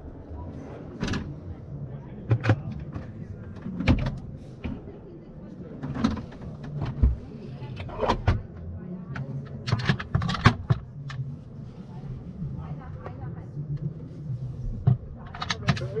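Motorhome drawers and wooden cupboard doors being opened and closed: a string of clicks and knocks scattered through, over background chatter and a low hum.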